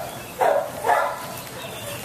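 Dog giving two short vocal sounds, about half a second apart, while nosing at a treat held in a hand.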